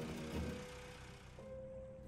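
Soft background music with held notes that change in steps, fading down in the second half.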